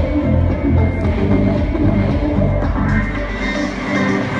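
Live pop music played loud through an arena's sound system, with a heavy bass line, heard from among the audience in a large concert hall.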